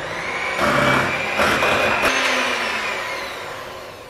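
Electric hand mixer running, its beaters whisking whipped cream and cream cheese together in a glass bowl. A steady motor whine that gets gradually quieter over the second half.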